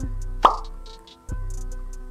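Short edited-in music sting: a held chord over deep bass, a loud quick rising 'bloop' pop about half a second in, then a second chord starting suddenly just past a second in.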